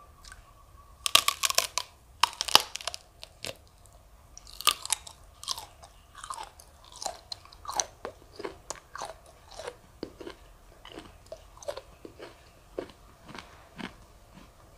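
Close-miked bites into a raw cactus pad: several loud crunches about a second in, then chewing with smaller crunches that grow sparser.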